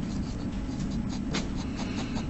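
Pen scratching on paper in short strokes while drawing an arc and writing a number, over a steady low room hum.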